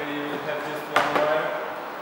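Plastic retaining clip of an Audi Q7 rear roof spoiler snapping free as the spoiler is pulled upward by hand: a light click, then a sharp loud crack about a second in.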